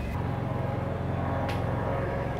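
Steady low hum of outdoor city ambience, with road traffic and machinery below blending together, and one faint click about one and a half seconds in.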